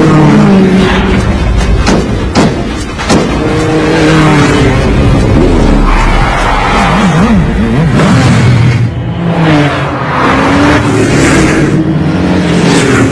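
Motorcycle engines revving hard in a chase, their pitch rising and falling as the throttle opens and closes, with a few sharp knocks about two to three seconds in.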